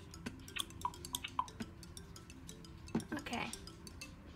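Light plastic clicks and taps of a toy baby bottle against a Baby Alive doll's mouth, many small clicks in quick succession, thinning out in the second half, over faint background music.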